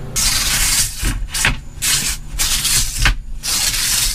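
Wooden bed slats sliding and rubbing against each other and the bed frame in about five separate rubbing strokes, each about half a second long.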